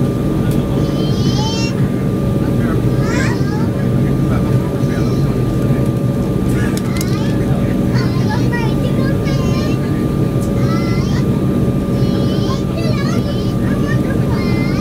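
Cabin of an Embraer 190 on the ground before takeoff: a steady drone from its GE CF34 turbofan engines and airframe, with a few steady hum tones. Short high-pitched voices come over it now and then.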